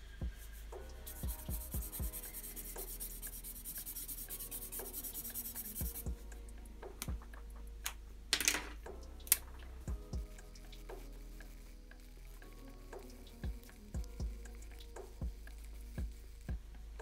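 Quiet background music with short pitched notes. Between about one and six seconds in there is a scratchy high hiss of a marker being worked over paper, with scattered sharp clicks through the rest.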